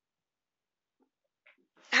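A pause in a woman's talk: near silence, with a faint breath and mouth noises in the second half. Her voice starts again right at the end.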